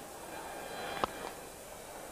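A single sharp crack of a cricket bat striking the ball about a second in, from a well-timed straight drive, over low steady background noise.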